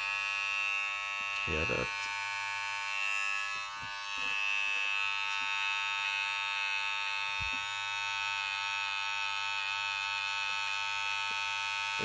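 Kemei KM-1931 cordless T-blade hair trimmer switched on and running, a steady high-pitched electric buzz that dips briefly about four seconds in.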